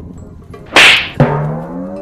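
A slap to the face: one sharp, loud crack about three-quarters of a second in that dies away quickly. It is followed by a drawn-out cry of pain that rises slightly in pitch.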